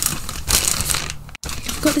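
Rustling and crinkling of tissue paper and clothing being handled, which breaks off abruptly a little over halfway through.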